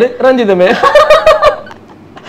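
Laughter: a loud voiced laugh with a fast wobble in pitch, dying away about one and a half seconds in.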